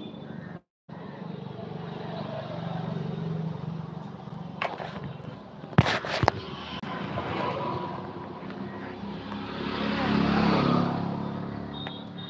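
Motor vehicle engine running and passing, swelling to its loudest near the end. Sharp clicks of the phone being handled about halfway through.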